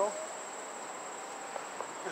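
Insects trilling, a steady high-pitched buzz that does not change, over a soft background hiss.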